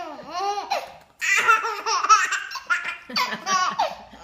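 A baby laughing hard in repeated high-pitched bursts, with a brief pause about a second in.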